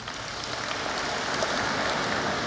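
Audience applause, a dense, even clapping that builds steadily through the pause in the speech.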